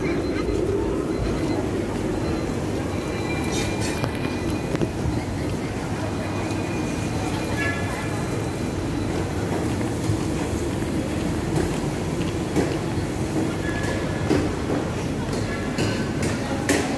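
A Hong Kong tram running along its street tracks close by, over the steady chatter of a busy street-market crowd.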